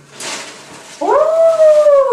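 A dog's single long howl starting about a second in, rising and then slowly sliding down in pitch. Just before it comes a short rustle of packaging as a box is unpacked.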